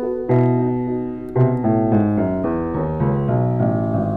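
A c.1892 Bechstein Model III 240 cm grand piano, freshly restored, regulated and voiced, being played. A full low chord is struck about a third of a second in and another about a second later, then a run of notes and chords steps downward.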